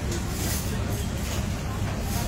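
Restaurant background noise: a steady low hum with faint chatter.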